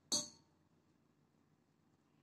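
Metal kitchenware knocked once: a short clang with a brief ring just after the start.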